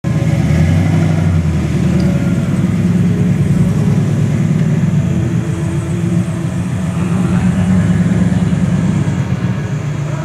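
2014 Camaro SS 6.2-litre V8 idling as it rolls slowly toward the line, a steady deep rumble, with a second V8 pickup idling behind it.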